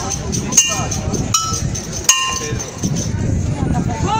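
A metal bell like a cowbell struck about three times at an even slow beat, each hit ringing briefly, over street and crowd noise.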